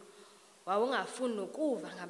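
A woman speaking into a microphone after a brief pause, her voice rising and falling in pitch.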